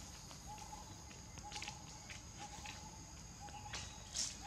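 Faint outdoor ambience: a steady high-pitched insect buzz, with a short low call repeating about once a second and a few light clicks and rustles.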